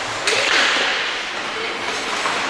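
Ice hockey game sound: a sudden sharp crack about a quarter second in, then about a second of hissing scrape on the ice, with a few short shouts.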